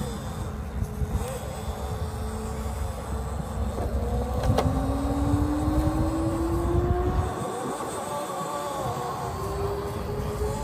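Scale RC rock crawler's brushless motor and geared drivetrain whining as it crawls over rocks. The whine climbs slowly in pitch from about halfway through, with small wobbles as the throttle changes, over a low rumble. There is one sharp click about halfway.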